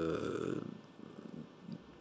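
A man's drawn-out hesitation sound ("euh") held on one pitch, breaking about half a second in into a low, fading creaky rasp as the voice trails off.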